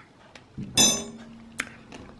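A metal spoon set down on a stainless steel counter, clinking against a second spoon: one sharp clink about three quarters of a second in that rings briefly, then a light tap.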